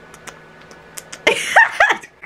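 A woman's sudden vocal outburst about a second in: a loud breathy laugh followed by two short, high-pitched squeals.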